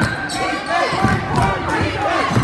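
Basketball being dribbled on a hardwood gym floor, with repeated bounces, over chatter and shouts from players and spectators.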